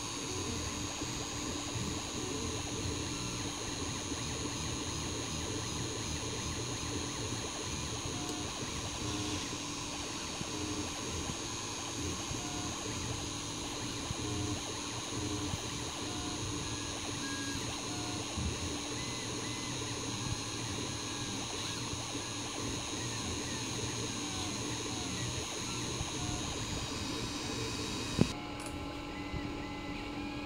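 Hobby FDM 3D printer running a print: its stepper motors give short, clipped whining tones at a few pitches as the print head moves in small steps, over a steady whir. A sharp click sounds near the end.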